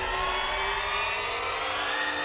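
A dramatic sustained swell of layered tones that slowly climbs in pitch, the kind used in a TV drama's background score to build tension.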